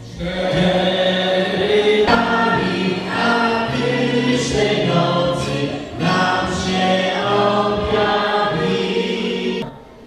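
A choir singing a Polish Christmas carol in long, held notes. It cuts off abruptly just before the end.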